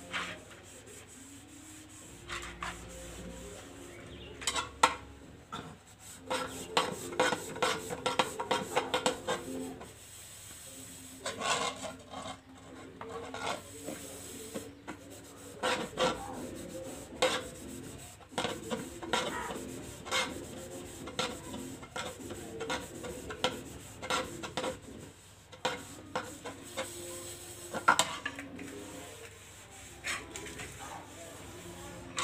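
Stainless steel plates and bowls being scrubbed by hand, in irregular runs of scrubbing strokes with occasional sharp clinks of metal on metal.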